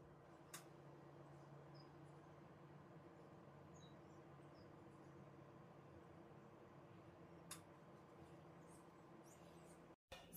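Near silence: room tone with a faint steady hum, two faint clicks (about half a second in and about seven and a half seconds in), and a few tiny high chirps.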